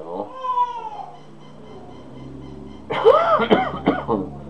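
Domestic cat meowing: one falling meow just after the start, then louder rise-and-fall meows about three seconds in.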